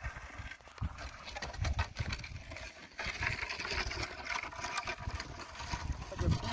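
Long wooden poles scraping and knocking as they are dragged over stony dirt, with crunching footsteps. The scraping gets denser and louder about three seconds in.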